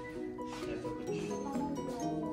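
Background music: held notes that change pitch every so often.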